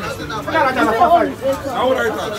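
Speech only: people talking, with no other distinct sound standing out.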